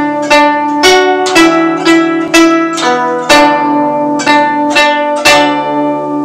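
Guzheng plucked with fingerpicks, playing a slow phrase of single and paired notes at about two plucks a second, each note left ringing so they overlap. The last pluck, about five seconds in, rings on and fades.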